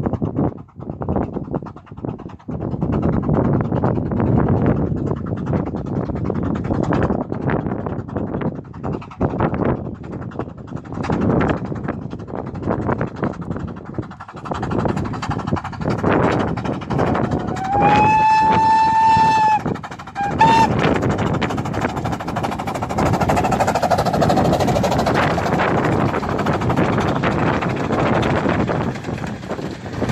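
Steam whistle of a 15-inch gauge Romney, Hythe & Dymchurch Railway locomotive: one long blast of about two seconds, then a short toot, over heavy wind buffeting the microphone. The train's running sound grows louder near the end as the coaches pass close by.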